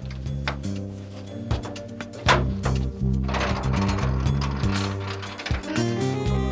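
Metal clicks and clanks of a steel garage door's lock and hasp being worked and the door pulled open, over background music with steady held low notes.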